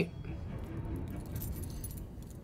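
Faint jingling of a bunch of keys, a few small metallic clinks, over a low steady rumble.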